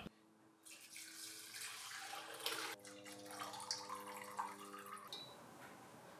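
Faint trickling and dripping of hibiscus-infused rum as it is poured from a glass jar through a cloth straining bag into a glass measuring cup. It starts about a second in and stops about five seconds in.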